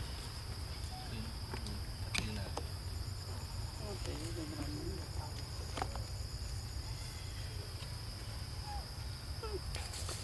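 Insects chirring steadily on one high continuous note, over a low steady rumble, with a few faint clicks.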